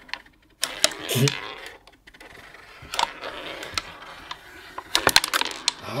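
Klask game in play: the strikers hitting the small ball and the ball bouncing off the board's wooden rim, making sharp clicks and knocks at irregular intervals, with a quick flurry of them near the end.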